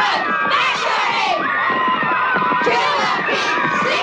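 A crowd of boys shouting and cheering together, many voices yelling at once without letting up.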